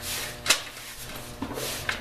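A sharp clack about half a second in and a smaller click near the end, from hands working a makeshift checkout counter as a sale is rung up.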